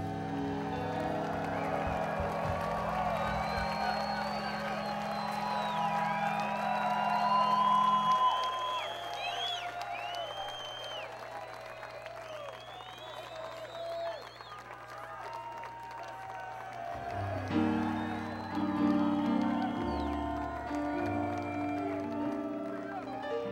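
A live roots reggae band holds long low bass notes while the crowd cheers and whoops. A moving bass line comes back in about 17 seconds in.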